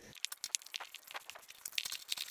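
Faint, irregular clicking and crinkling of a threaded pressure-gauge test fitting being screwed by hand onto a tape-wrapped black iron pipe stub.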